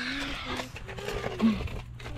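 Short wordless vocal sounds, held tones that break off and restart, over a low steady hum.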